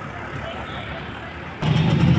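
Street ambience with people's voices in the background. About one and a half seconds in it jumps suddenly to a louder, low steady rumble of a vehicle engine close by.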